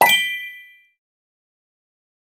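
A single bright chime, struck once, ringing with several high tones that die away in under a second: the audio sting of a TV station's logo ident.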